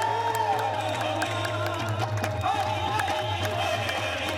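Qawwali music: voices singing long, wavering lines over a steady low drone, with sharp percussive strikes throughout.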